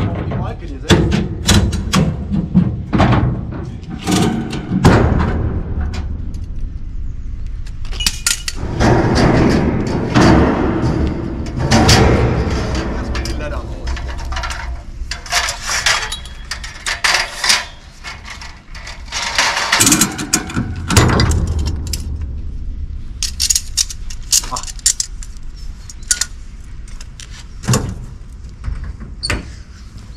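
Irregular metal knocks and clanks as the steel side stanchions of a flatbed trailer are handled and set in place, over a steady low rumble.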